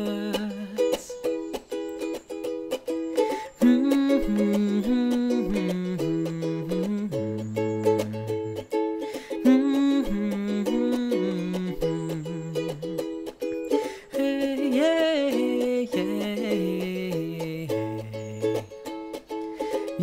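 Instrumental break of a light home-made pop song: a ukulele strummed over electronic keyboard chords, with a keyboard bass line stepping down and back up in pitch.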